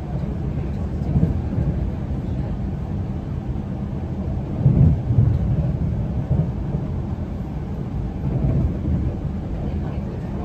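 Inside a passenger train's carriage: the steady low rumble of the train running along the track, with louder jolts about a second in and a heavier run of them around the middle.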